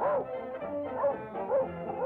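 Cartoon dog yipping: a few short yips, each rising and falling in pitch, about one every half second, over an orchestral score.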